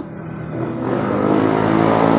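A motor vehicle passing on the street, its engine note building up over the first second and then holding loud and steady.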